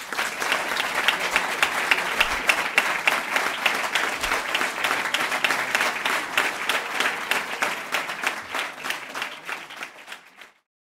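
An audience applauding: dense, steady hand-clapping that fades near the end.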